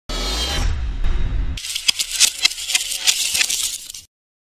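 Channel logo intro sting: a deep bass swell for about a second and a half, then a quick run of sharp clicks and rattles that fades out near the end.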